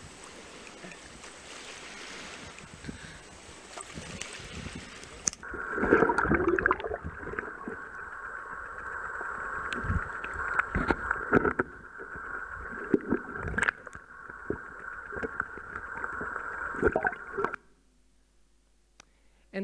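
Shallow surf washing over a sandy beach. About five seconds in, this gives way to underwater sound from the seabed: a steady high-pitched hum with irregular knocks and clicks. It cuts off just before the end.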